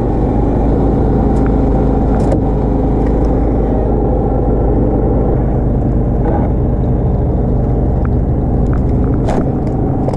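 Small engine running steadily at an unchanging speed, with a low hum.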